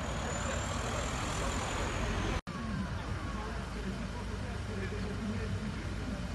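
Outdoor street noise: a crowd of people talking over a steady traffic rumble. The sound cuts out abruptly for an instant about two and a half seconds in.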